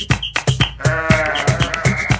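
Upbeat instrumental children's music with a steady dance beat, and a single sheep bleat about a second in, lasting about a second, with a wavering pitch.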